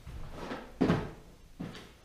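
Cardboard boxes being handled and set down: a few dull thumps and knocks, the loudest about a second in.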